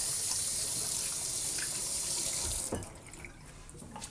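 Kitchen faucet running in a steady stream while oily hands are rinsed under it, then shut off abruptly just under three seconds in.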